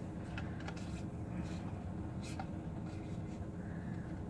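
Pokémon trading cards being handled and slid past one another in the hand: faint scratchy slides and a few soft clicks, over a steady low hum.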